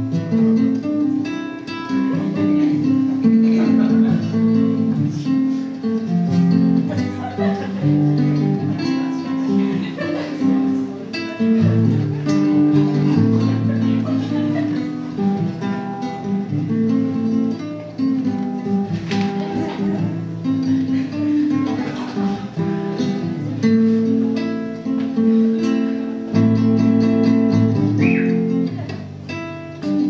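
Solo acoustic guitar instrumental break, with notes picked and strummed through shifting chords.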